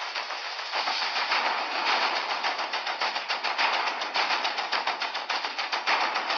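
Large audience applauding: a dense patter of many hands clapping, swelling about a second in and holding on.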